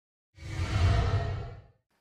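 A cinematic whoosh sound effect with a deep rumble underneath, swelling in and fading away over about a second and a half, as a logo sting.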